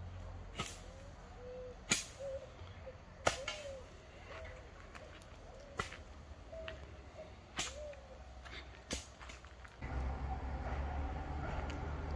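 About six sharp clicks or snaps at irregular intervals, one to two and a half seconds apart, over faint short chirps. About ten seconds in, a louder low rumble sets in.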